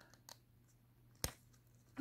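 Mostly quiet handling of a stack of O-Pee-Chee Platinum hockey cards being pried apart, with a few faint ticks and then one sharp click a little after a second in. The cards are stuck together by factory glue, a little bit of stickage.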